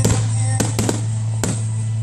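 Aerial firework shells bursting with sharp bangs, four or so in two seconds, over music with a steady low bass note.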